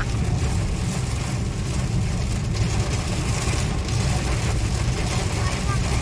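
Car driving on a rain-soaked road, heard from inside the cabin: a steady low rumble of engine and road, with an even hiss from tyres on the wet surface and rain on the car.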